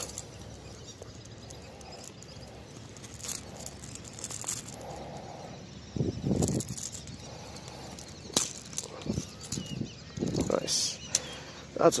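Scattered rustles, bumps and a click from rod, reel and arm being handled close to the microphone, over a faint outdoor background.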